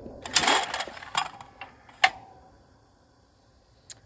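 Electric wobble clay target trap firing: a loud swish and clack of the throwing arm releasing about half a second in, then mechanical clicks and a sharp clack about two seconds in as the trap resets itself for the next throw.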